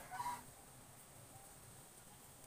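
A brief, faint animal call about a quarter second in, then low steady background hiss.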